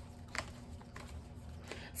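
Tarot deck being shuffled by hand: a few faint card clicks.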